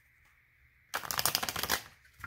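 A deck of oracle cards being shuffled by hand: a quick, dense run of papery clicks starting about a second in and lasting just under a second.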